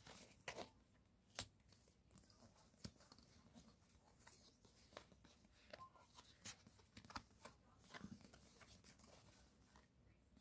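Uno Flip playing cards being fanned and slid against one another: faint, scattered clicks and soft card snaps, the sharpest about a second and a half in.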